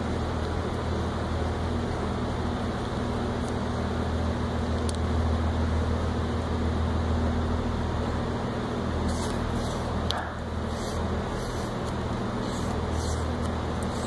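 A steady low machine hum, swelling slightly in the middle and dipping briefly about ten seconds in, with a few faint clicks near the end.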